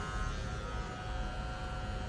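Cordless electric hair clippers running with a steady hum while trimming around the ear, the hum growing fainter after about half a second.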